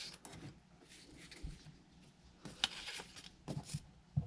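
Faint handling of construction-paper cut-outs on a tabletop: light rustling with a few short clicks and taps in the second half as a plastic school-glue bottle is picked up.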